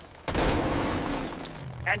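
Cartoon crash sound effect of a scrap pile bursting apart: a sudden loud crash about a quarter second in that fades away over a second and a half.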